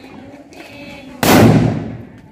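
A ground firecracker exploding once with a loud, sudden bang about a second in, dying away over most of a second.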